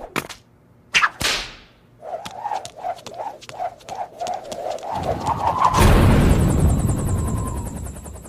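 Cartoon sound effects for skipping with a jump rope: a sharp crack and swish of the rope about a second in, then a run of quick repeated tones rising in pitch. These build into a loud rush of noise with a high buzz over it near the end.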